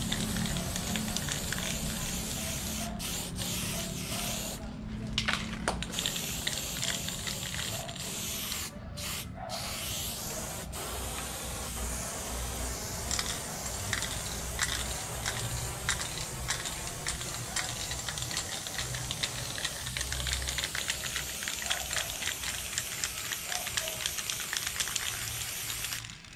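Aerosol spray paint can hissing as paint is sprayed onto a wall in long, steady passes, with a couple of brief breaks where the nozzle is let go, about five and nine seconds in.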